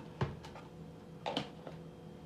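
A metal spoon clinking against a glass mixing bowl of coleslaw: a short tap just after the start and a brighter, briefly ringing clink about a second later.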